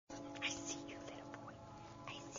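A German shepherd puppy panting softly, over a steady low hum and a few short, high, whistling glides.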